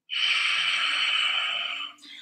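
A woman's long, audible breath: one steady rushing hiss lasting nearly two seconds, which stops just before the end.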